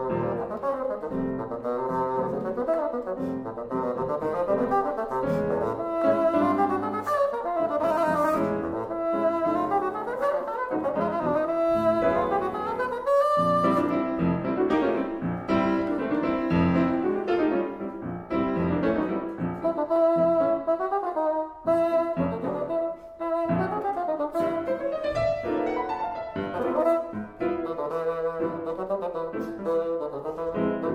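Bassoon and grand piano playing together, the bassoon moving in quick runs and leaps over busy piano accompaniment, with a couple of brief drops in level near the end.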